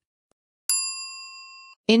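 A single bell-like ding sound effect struck about two-thirds of a second in, marking the change to the next item in the countdown. It rings with a clear, steady tone, fades over about a second and then cuts off.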